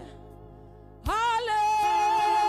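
Live gospel singing led by a woman's voice. The sound drops away almost to a faint held accompaniment tone, then about a second in the voice comes back with a note that slides up and is held steady.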